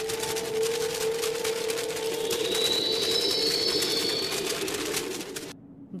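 Steady downpour of rain with a sustained drone under it, cut off suddenly about five and a half seconds in.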